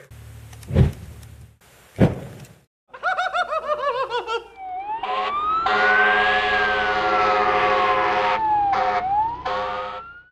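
Two dull thumps, then an emergency vehicle siren: a fast yelp about three seconds in that changes to a slow rising and falling wail, with blasts of an air horn over it, one long one in the middle.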